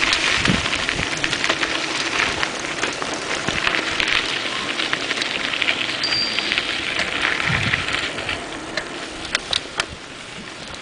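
Mountain-bike tyres crackling over a dirt and gravel road, with small rattles and ticks from the moving bike. The noise eases off near the end.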